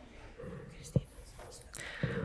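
Faint whispered speech in a quiet church, with one sharp knock about a second in.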